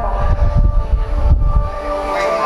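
Low rumble and irregular thumps of handling noise on the camera's microphone as the camera is swung round, dying away near the end. Steady held musical tones from the hall's loudspeakers sound beneath it.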